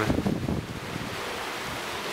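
A steady rushing noise.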